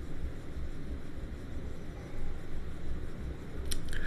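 Low steady background rumble, then near the end two sharp clicks in quick succession: snooker balls striking, cue on cue ball and cue ball on object ball.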